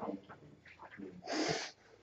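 A man's short breath in about one and a half seconds in, after a quiet pause, just before he speaks again.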